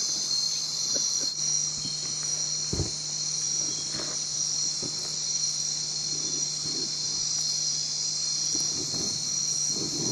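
Steady, unbroken high-pitched chorus of tropical insects trilling together in a Guianan marsh, with a low steady hum underneath and a few faint knocks.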